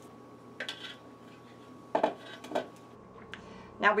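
A utensil knocking and scraping in a food processor bowl as ground chicken is emptied out: a few short clinks and knocks, the loudest about two seconds in.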